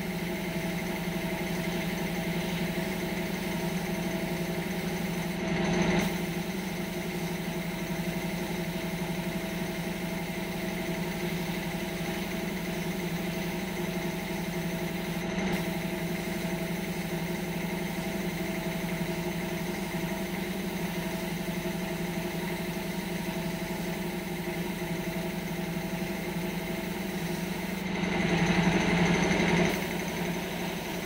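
Air compressor feeding an airbrush, running with a steady hum. The sound swells louder and brighter briefly about six seconds in and again near the end.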